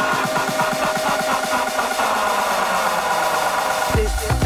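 Electronic dance music in a breakdown during a DJ set: the bass is cut, a fast pulsing figure fades and a tone slides downward, and the full beat with heavy bass drops back in right at the end.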